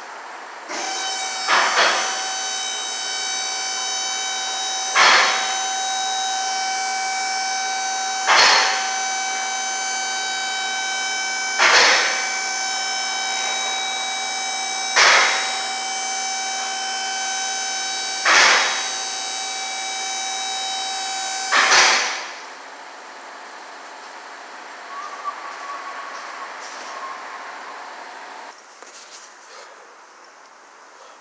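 Vehicle lift of an alignment rack raising a van: its motor runs with a steady whine, and a sharp clack comes about every three seconds, seven times, until the motor stops about 22 seconds in.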